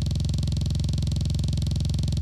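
Low, steady electronic buzzing drone with a fast, even pulse, from a synthesized soundtrack.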